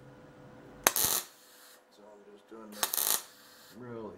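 MIG welder laying two short tack welds on a steel brace, each a brief crackling burst, about one second in and again near three seconds. The tacks are kept short to keep heat out of the part.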